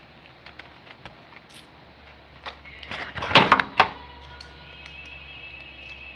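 Plastic-and-foil blister pack of tablets crackling and clicking as pills are pressed out through the foil, loudest in a burst about three to four seconds in. A faint steady high tone follows.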